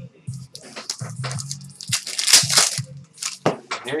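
A foil trading-card pack being torn open and its wrapper crinkled, in a run of short rustles that are densest about two to three seconds in.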